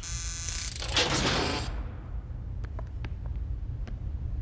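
Electric door-release buzzer buzzing for under a second, then a rushing hiss as a heavy security door opens, followed by a few faint ticks over a low steady hum.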